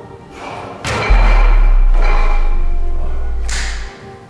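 A steel strongman log dropped from overhead onto two tyres: a heavy thud about a second in, followed by a loud, steady low rumble for nearly three seconds that stops suddenly near the end.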